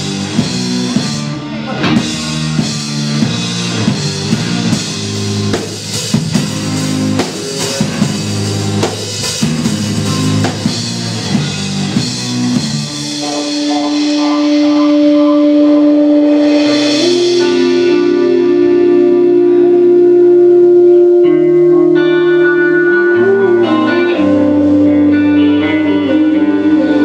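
Live instrumental progressive rock: drum kit and guitar play a busy, accented riff, then about halfway through the drums drop out and long sustained keyboard synthesizer notes hold over a slowly changing bass line.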